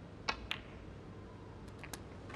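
Snooker cue striking the cue ball, then the cue ball clicking sharply into the black about a fifth of a second later. A few fainter clicks follow near the end as the balls run on.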